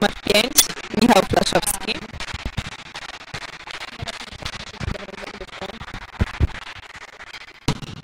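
Voices calling out across a reverberant sports hall, then a steady hubbub with a few low thumps. Shortly before the end comes a single sharp smack of a hand striking a volleyball on the serve.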